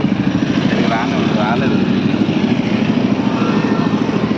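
A motor vehicle engine running steadily close by, with a fast, even pulsing and no revving. A faint voice is heard briefly about a second in.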